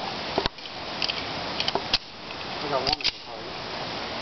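A handful of sharp clicks and knocks at irregular intervals, none as loud as the nearby talk, with a brief bit of voice around three seconds in.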